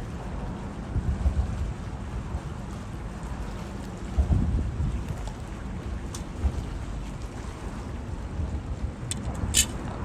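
Wind buffeting the microphone: an uneven low rumble that swells in gusts, with a sharp click near the end.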